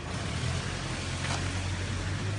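Street background dominated by the steady low hum of a running vehicle engine, with a faint click about a second in.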